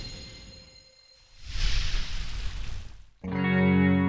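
A short noisy swell rises and dies away, then a guitar chord comes in sharply about three seconds in and rings on steadily.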